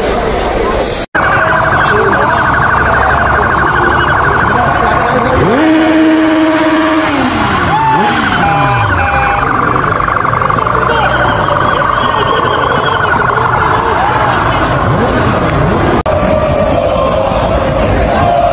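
Sirens wailing and sweeping up and down in pitch over the steady noise of a street crowd of football supporters, with a brief drop-out about a second in.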